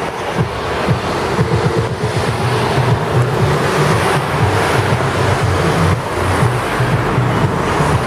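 Wind buffeting the microphone, a loud steady rush, over outdoor street and crowd noise.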